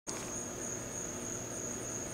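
Crickets trilling steadily on one high note, with a faint low hum underneath.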